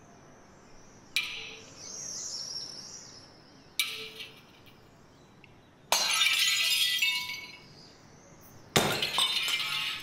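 Glass breaking in four separate crashes, each with a sharp start. The last two are longer, with about a second of tinkling, shattering fragments each.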